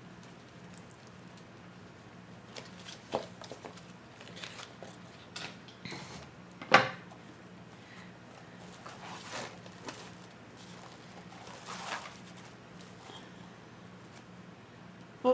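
Burlap ribbon and a pipe cleaner being handled and twisted into a bow, with scattered rustles and crinkles and one sharp knock about seven seconds in, over a faint steady low hum.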